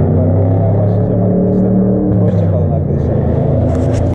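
A man's voice speaking close to the microphone, then rustling and knocking from a hand handling the camera near the end.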